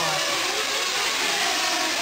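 Several 1/8-scale nitro RC truggies' small glow-fuel engines running and revving together, their pitches overlapping and rising and falling as the trucks race around the track.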